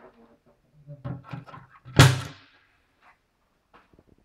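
The plastic front door of a wall-mounted electrical distribution box knocking and then shutting with a loud thump about two seconds in, after a few lighter clicks and knocks.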